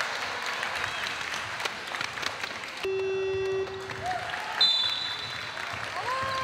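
Basketball gym crowd shouting and clapping. About three seconds in, the game-end buzzer sounds for just under a second as a steady low horn tone, marking the end of the game. A short, high whistle follows a second and a half later.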